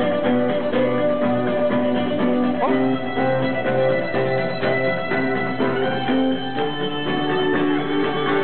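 Live contra dance tune played on strummed acoustic guitar with a fiddle carrying the melody, with a steady driving beat.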